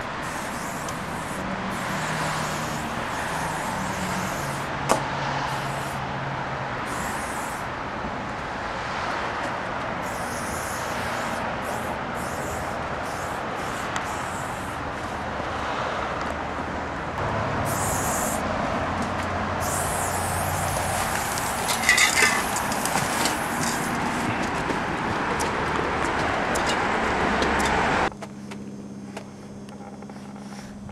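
Aerosol spray-paint can hissing in on-and-off bursts over steady street traffic noise. The sound drops abruptly to a quieter background near the end.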